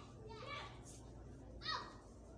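Faint children's voices in the background, a couple of short high calls, over a low steady hum.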